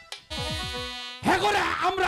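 A buzzing tone lasting about a second, with repeated falling low notes beneath it, then a voice begins speaking.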